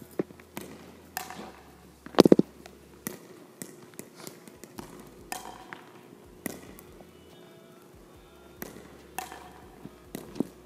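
Pickleballs being hit with a wooden paddle and bouncing on a hardwood gym floor: a series of sharp, echoing knocks spaced a second or more apart, the loudest a quick cluster about two seconds in.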